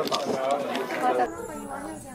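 People talking close by, then quieter background chatter of several voices from about a second in.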